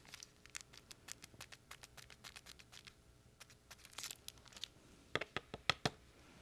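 Faint scattered ticks and light rustles of glitter being sprinkled onto a glued paper card while the card is handled. A few louder clicks come near the end.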